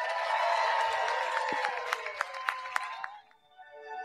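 Reception crowd clapping and cheering, with many sharp individual claps. It cuts off suddenly about three seconds in, and soft music with held notes begins near the end.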